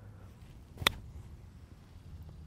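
A Callaway Mack Daddy 4 C-grind 60-degree wedge striking a golf ball off the grass on a 40-yard pitch shot: one sharp click a little under a second in.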